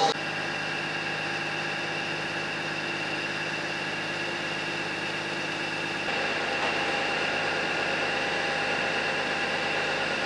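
Steady humming of trains standing at the station platform, their onboard equipment running with several steady tones. It steps up slightly in level about six seconds in.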